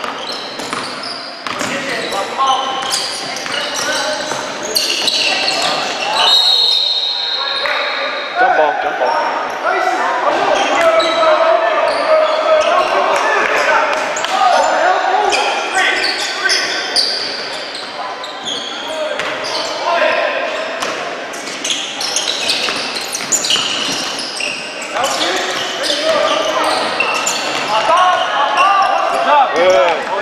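Basketball game in a gym: a ball bouncing on the hardwood and sneakers squeaking amid players' and spectators' voices. About six seconds in comes a referee's whistle, held for about two seconds.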